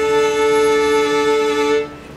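Fiddle sounding one long, steady bowed note on an up-bow, the bow pulled back towards the player so it digs firmly into the strings; the note stops shortly before the end.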